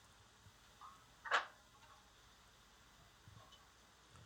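Quiet background hiss, broken by one short noise about a second and a half in.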